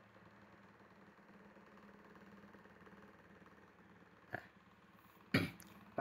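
Quiet room tone with a faint steady hum, a single short click about four seconds in, and a brief throat clear from the narrator shortly before the end.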